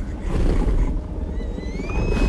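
Film sound design of a large predatory dinosaur, the Indoraptor, growling in a low, dense rumble. A thin high tone rises about one and a half seconds in and holds.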